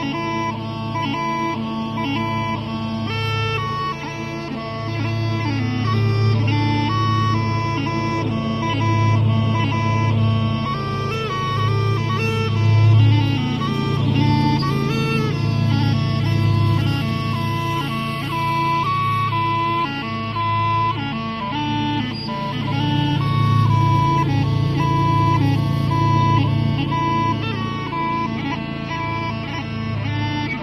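Scottish smallpipes playing a tune: the drones hold a steady chord while the chanter moves through a quick melody of changing notes.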